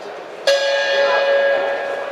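Boxing ring bell struck once, about half a second in, its metallic ring carrying on and slowly fading; it signals the start of a round.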